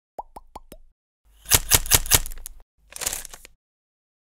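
Logo-intro sound effect: four quick pops, each dropping in pitch, then a run of five sharp hits over a rushing noise, and a short hissing whoosh that stops about half a second before the logo settles.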